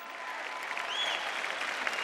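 Large audience applauding, the applause growing steadily louder, with one short high call rising and falling in pitch about a second in.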